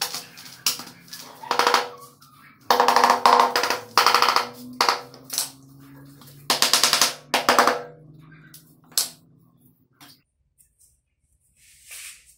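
Bursts of rapid hand taps on a ceramic floor tile, beating it down into a fresh bed of notched tile-over-tile mortar to seat it. The taps come in three quick runs, then a single tap about nine seconds in.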